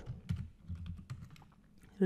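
Computer keyboard typing: a quick run of faint keystrokes that stops about a second and a half in.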